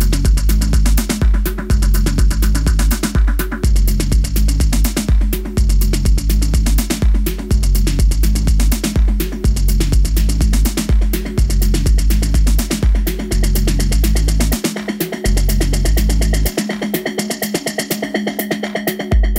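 Minimal techno track played back over studio monitors: a drum-machine beat with a deep kick and bass line and fast ticking hi-hats. The bass drops out briefly near the end.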